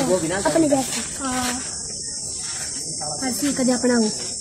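People talking in short snatches over a constant high-pitched hiss.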